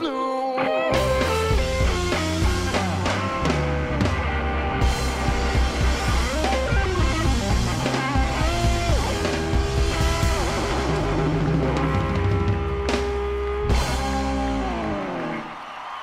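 Live blues-rock trio of electric guitar, bass and drums playing an instrumental passage, the electric guitar leading with bent notes. Near the end the guitar slides down and the band stops.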